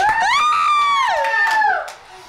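Several people, a child among them, screaming and cheering in celebration: long, high-pitched overlapping screams that break off shortly before the end.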